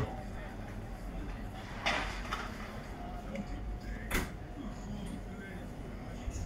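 Open-air background noise with a steady low rumble, a short scraping rush about two seconds in and a single sharp knock just after four seconds.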